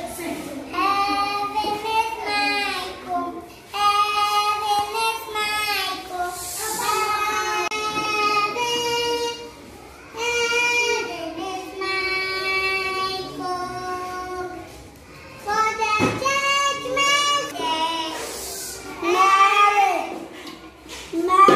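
A young child singing alone and unaccompanied, in short phrases of held notes with brief breaks between them.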